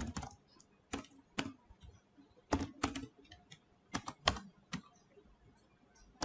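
Computer keyboard typing: single keystrokes and short runs of two or three keys, irregular and separated by pauses.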